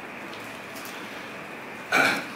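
Steady hiss of room noise with no speech. Near the end there is one brief, louder sound.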